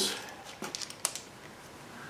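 A few faint, light clicks from the small metal pickup-coil assembly of an HEI distributor being handled with a screwdriver, one about half a second in and another about a second in.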